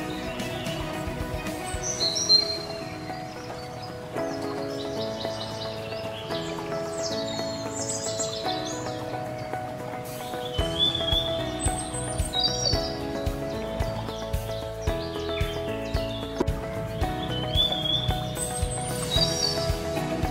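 Instrumental background music of held chords, with bird chirps heard over it. A steady low beat comes in about halfway through.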